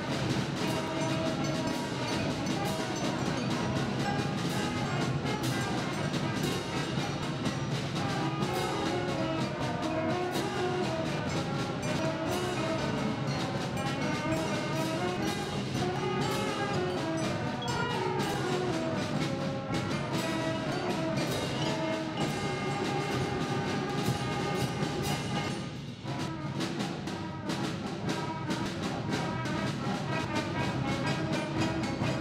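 A middle/high school concert band playing a piece: flutes and clarinets with brass over timpani and percussion. The whole band plays continuously, with one brief drop in loudness near the end before it comes back in full.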